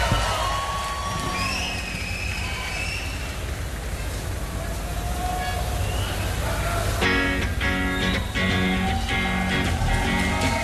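Live concert: crowd noise with voices and whistles over a low rumble. About seven seconds in, the band starts the song with a steady, rhythmic intro on drums and guitar.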